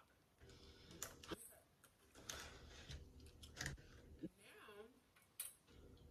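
Near silence broken by a few faint, sharp clicks and crackles, with a brief murmured voice about four and a half seconds in.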